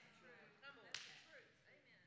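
Near silence in a pause in speech, with faint voice sounds and a single soft click about a second in.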